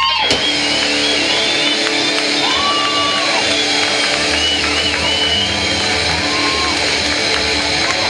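Live metal band playing loudly: an electric guitar chord held steady under a wash of cymbals, with shouting over it.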